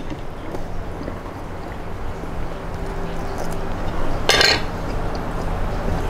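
Close-miked chewing of syrupy baklava, with soft wet mouth sounds and one short, louder mouth sound about four seconds in, over a steady low hum.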